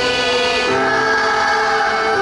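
A group of children singing a Hindi Krishna bhajan together, with held melody notes over keyboard, tabla and dholak accompaniment.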